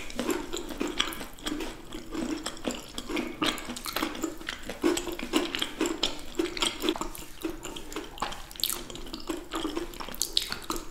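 Close-miked chewing of chocolate-covered caramel bars: wet, sticky mouth sounds with many small irregular clicks.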